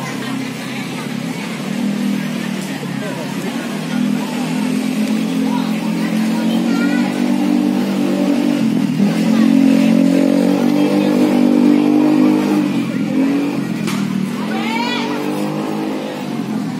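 An engine running with a steady drone that grows louder around the middle, amid people's voices.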